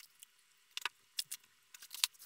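Light handling noise: a handful of short clicks and rustles, scattered across the two seconds, as gloved hands move an aluminium straightedge and a sheet of polarizer film on the workbench.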